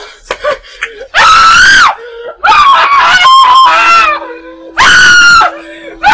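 A woman screaming in distress, three long, very loud, strained screams, each pitched high and wavering.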